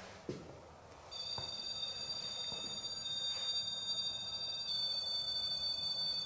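Steady high-pitched electronic alarm tone from a ghost-hunting detector set on the floor, starting about a second in and holding, with a slight change in pitch near five seconds: the device has been triggered.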